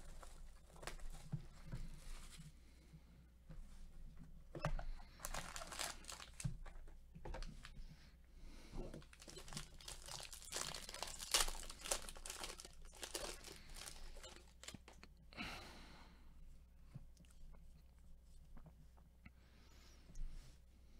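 Plastic and foil wrapping of a trading-card pack crinkling and tearing as it is opened by gloved hands, in irregular crackles that are busiest in the middle and thin out near the end.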